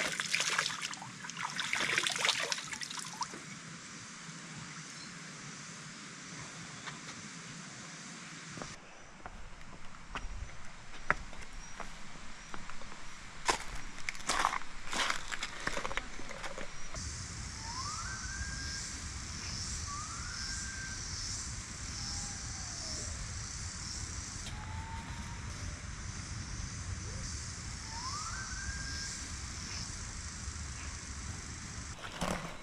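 Water splashing briefly at the start, then a few sharp knocks. From about halfway, jungle insects buzz in a high pulsing drone and a bird gives a rising whistle several times.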